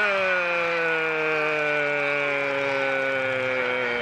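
Spanish-language TV commentator's long, drawn-out shout of "gol" for a penalty kick just converted. It is one held note that slides slowly down in pitch.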